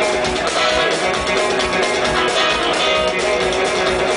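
Live psychobilly band playing an instrumental passage: electric guitar over upright double bass and drums, with a steady beat.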